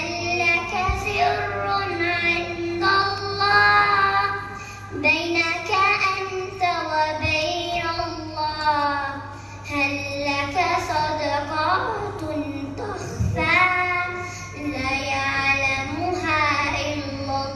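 A young girl singing an Arabic nasheed solo and unaccompanied, drawing out long, ornamented sung notes that bend up and down, with a steady low hum underneath.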